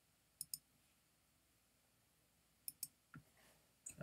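Computer mouse clicks: two quick double-clicks, one about half a second in and one near three seconds in, otherwise near silence.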